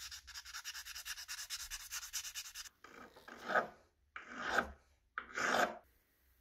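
A brass faucet part is hand-sanded with 400-grit sandpaper. First come quick back-and-forth strokes, several a second. Then, from about three seconds in, there are three slower, louder rubbing strokes.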